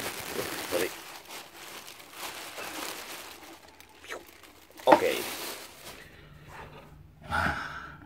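Handling noise: rustling as leather boots and their packing are moved about, with one sharp knock about five seconds in, the loudest sound. A short breath or sigh comes near the end.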